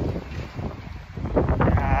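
Wind buffeting a phone's microphone outdoors, a gusting low rumble that eases about halfway through and picks up again. A man's voice comes back in near the end.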